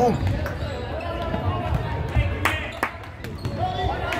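Futsal ball being kicked and bouncing on a wooden sports-hall floor: several sharp knocks, two close together a little past the middle, ringing in a large hall.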